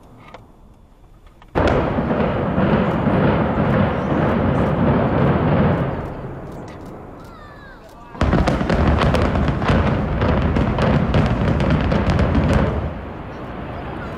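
Implosion of Martin Tower, the former Bethlehem Steel headquarters: a sudden burst of demolition charges going off in rapid cracks with the rumble of the building coming down. It is heard twice, each time lasting about four to five seconds before dying away.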